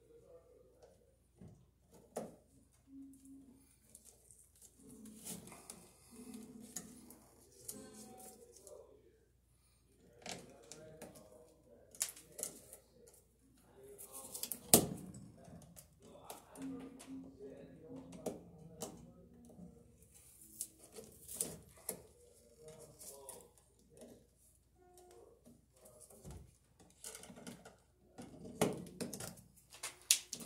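Electrician's hand tool clicking and snipping on electrical wires at a metal junction box, with short rustles of the wires between the clicks; the sharpest snap comes a bit before halfway. A low voice is heard briefly at times.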